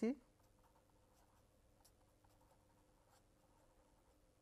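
Marker pen writing on paper: faint, scattered scratches of the pen strokes over a faint steady hum.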